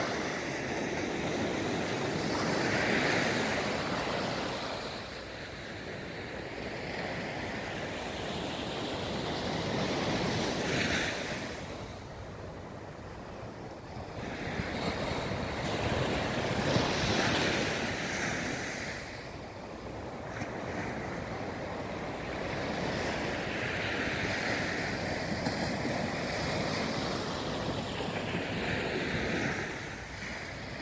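Small waves breaking and washing up a sandy beach, the surf swelling and falling away in surges every six to eight seconds.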